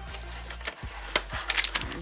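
Stiff plastic packaging clicking and crackling as a fashion doll is pulled out of its clear plastic tray, with the sharp clicks coming thicker in the second half.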